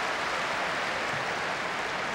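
Tennis crowd applauding steadily between points, an even, continuous clapping.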